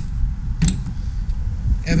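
A sharp click from the push-button latch of a black checker-plate aluminium storage box as the box is closed, heard over a steady low rumble.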